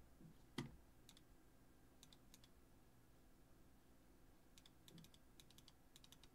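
Faint clicks of a computer keyboard and mouse: a duller knock about half a second in, a few scattered taps, then a quick run of clicks near the end.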